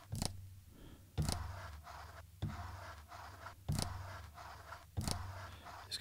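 Roland SP-404 MKII sampler pads triggering recorded samples of a Pringles can being slid and tapped on a table: five hits about one and a quarter seconds apart, each a sudden scrape that dies away.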